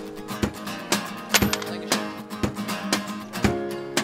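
Acoustic guitar strummed in a steady rhythm, with a strong stroke about twice a second and the chords ringing on beneath.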